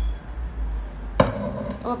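A glass jar set down on a wooden table with one sharp knock a little over a second in, just after sugar syrup has been poured from it into the mixing bowl.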